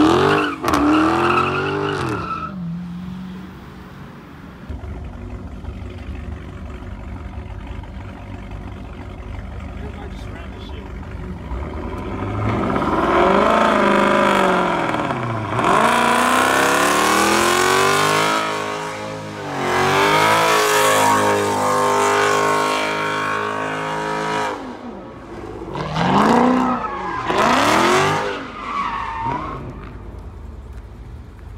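Muscle-car V8 engines revving hard during burnouts and donuts, the revs sweeping up and down again and again, with tyres spinning and squealing on the pavement. It is quieter and steadier for several seconds early on, then loud, rising and falling revving through the middle and again near the end.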